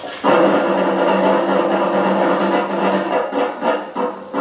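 Orchestral film-score music played back over the projection: a loud chord comes in suddenly just after the start and is held for about three seconds before breaking up near the end.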